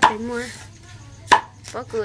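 Two sharp chopping knocks, a blade striking into wood, about one and a half seconds apart.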